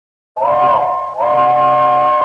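Steam locomotive chime whistle blowing two long blasts, a steady chord of several tones, starting sharply about a third of a second in.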